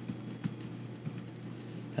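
Typing on a computer keyboard: a few light, scattered keystrokes.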